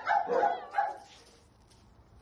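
A dog barking: about three short barks in quick succession in the first second.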